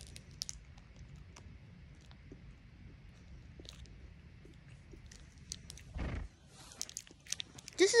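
Faint chewing of a bite of chocolate bar, with scattered small mouth clicks. A low thump comes about six seconds in, followed by a brief rustle.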